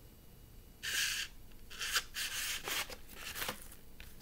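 A vinyl LP's paper inner sleeve rubbing and sliding against the shrink-wrapped cardboard album jacket as it is handled and pushed back in: a few short rustling scrapes, the loudest about a second in and another about two seconds in.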